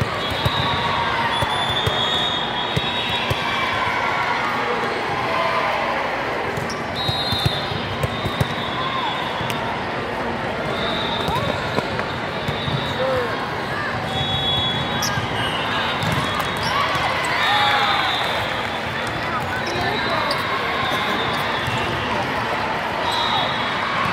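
Indoor volleyball play in a large, echoing sports hall: scattered sharp smacks of the ball being hit and short high sneaker squeaks on the court, over steady crowd chatter.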